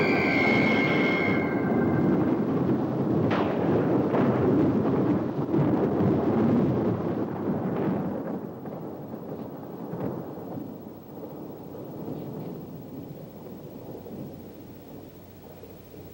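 A held organ chord cuts off about two seconds in. Under and after it comes a loud, low rumble with a few sharp cracks, which dies away gradually over the second half.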